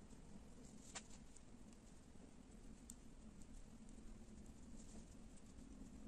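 Near silence: faint handling of soft chenille loop yarn by hand, with one small click about a second in.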